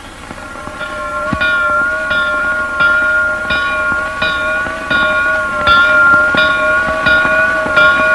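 Small church bell rung by hand with a rope, struck over and over at about three strokes every two seconds, its ringing hum carrying on between strokes: tolling to call the faithful to mass.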